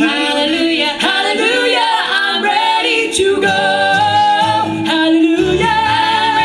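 Bluegrass gospel vocal harmony, led by women's voices and sung unaccompanied; low band instruments come in underneath in the second half and grow stronger near the end.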